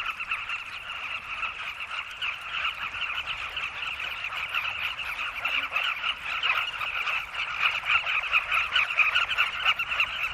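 Dense chorus of a carmine bee-eater colony: hundreds of birds giving short throaty calls that overlap into a steady din, growing somewhat louder in the second half.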